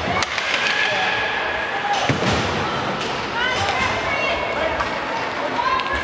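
Ice hockey play in a rink: a few sharp knocks and thuds of sticks, puck and boards, under indistinct raised voices of players or spectators.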